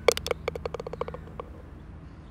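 A quick run of about a dozen sharp clicks that come closer together and fade out within about a second and a half, as a sound effect over an animated logo.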